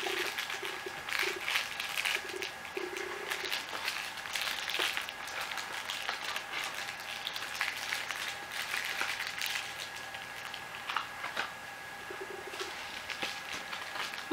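Packaging rustling and crinkling as a hand digs through a cardboard box and pulls out a plastic mailer envelope, busiest in the first few seconds and then sparser. Short low humming tones come and go early on and again near the end.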